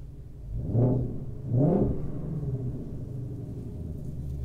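Ford Shelby GT500's supercharged 5.2-litre V8 idling with sport mode selected, blipped twice at standstill, each rev rising and falling back within about half a second, heard from inside the cabin.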